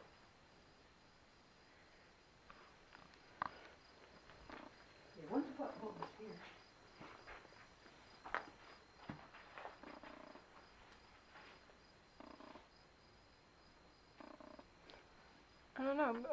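Quiet stretch with scattered faint clicks and knocks and a brief faint voice about five seconds in, over a faint, evenly pulsing high-pitched electronic tone.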